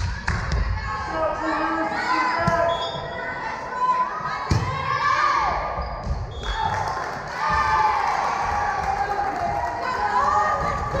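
A volleyball rally in a large echoing gymnasium: a few hollow thumps of the ball being struck and hitting the wooden floor, under girls' voices calling and shouting across the court, with cheering as the point ends.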